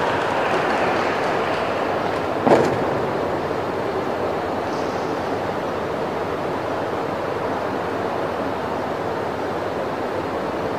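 Steady, even background noise of a large indoor gymnastics arena, with one sharp thump about two and a half seconds in.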